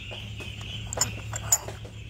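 A few light metallic clicks and clinks as a Stihl 026 chainsaw's chain and clutch drum are handled by hand, the sharpest about a second and a second and a half in.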